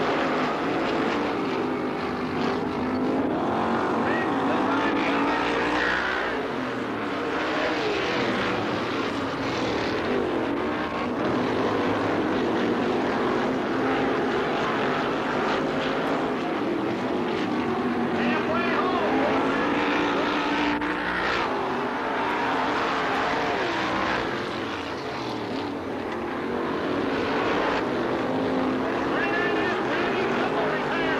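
Winged sprint cars racing, their V8 engines running hard, several at once, the pitch rising and falling without a break as the cars throttle through the turns and pass by.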